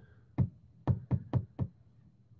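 Six short, sharp knocks on a hard surface, unevenly spaced over about a second and a half.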